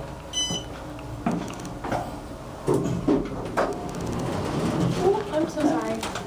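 Otis Series 5 elevator: a short electronic beep just after the start, then a few knocks and clunks as the cab doors slide closed.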